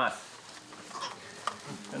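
A spoken word at the start, then a faint hiss with a few soft clicks, and speech starting again near the end.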